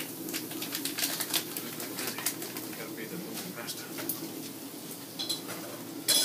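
Light clicks and knocks of kitchen handling over a steady low hum.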